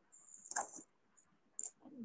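Chalk squeaking on a blackboard as a word is written: a faint high-pitched squeal for most of the first second with a tap in the middle, then two short squeaks.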